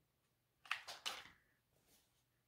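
White plastic hot glue gun set down on a cutting mat: two light knocks with a short rustle about a second in, and a faint tap near the end.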